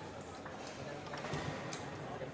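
Scattered sharp clicks and knocks of foosball play, the ball striking rods and the table, over a murmur of voices in a large hall.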